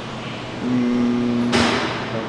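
A man's voice holding a drawn-out hesitation sound, a level 'uhh' of about a second, as he pauses mid-list. It ends in a short breathy burst near the end.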